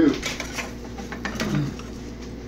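A woman's voice ends a word, and a short vocal murmur follows about a second and a half in. A few faint clicks fall between them over a low steady hum.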